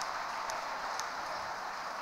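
Steady background hiss of a quiet ice arena, with two faint clicks about half a second apart.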